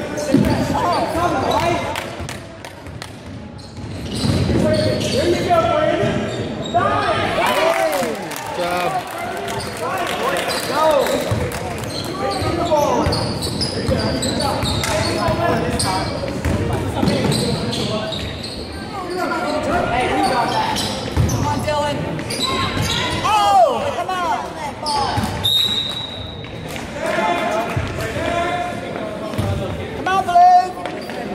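Voices calling out in a school gymnasium during a basketball game, with a basketball bouncing on the hardwood court. The sound carries the echo of the hall.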